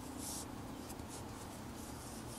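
Yarn and circular knitting needles handled close to the microphone while purling stitches: a few short, faint scratchy strokes, the clearest near the start.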